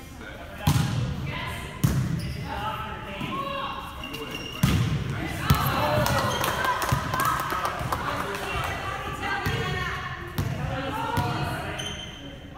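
Volleyball rally in a gymnasium: a volleyball is struck and thuds on the hardwood floor several times as sharp hits, over players' shouts and calls echoing in the hall.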